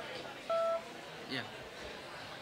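Congregation chatting while greeting one another, with one short, steady electronic beep about half a second in that stands out over the talk.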